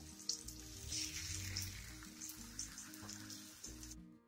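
Banana slices sizzling in ghee in a nonstick frying pan, a steady hiss with short crackles.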